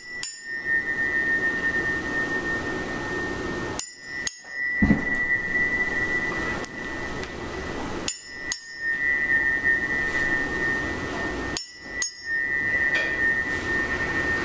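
A pair of small, softer-alloy tuning forks tuned to C and G, struck together four times about four seconds apart. Each strike is a sharp clink followed by a single thin, high ringing tone that dies away fairly quickly: a plain ring with the overtones not there.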